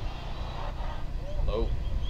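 A man's brief exclamation, "oh", over a steady low rumble.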